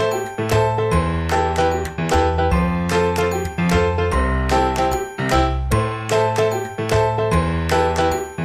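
Background music: a light tune of short, sharply struck notes over a bass line, at a steady pace.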